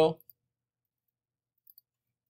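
End of a spoken word, then faint computer mouse clicks: a single click just after the word and a quick pair of clicks near the end.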